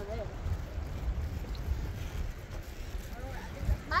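Wind buffeting the microphone: an uneven, gusty low rumble.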